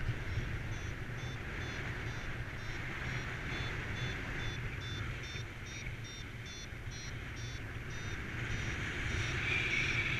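Paragliding variometer beeping in short high pips, about three a second, the climb tone that signals the glider is rising in lift. Steady wind rushes past the microphone underneath and gets louder near the end.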